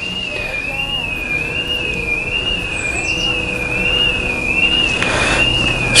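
An electronic alarm, which the cook takes for a car alarm, sounding one high tone that warbles up and down a little more than once a second.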